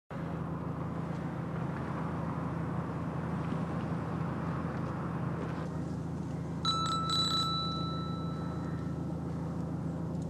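A mobile phone starts ringing about two-thirds of the way in: two short bright chimes, then a ringing tone held for about two seconds. Under it runs a steady low hum.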